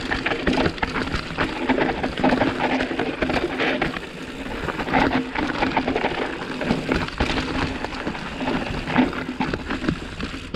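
Custom 29-inch hardtail mountain bike descending a steep, rooty dirt trail: tyres rolling over dirt and roots, with a dense run of knocks and rattles from the bike over the bumps.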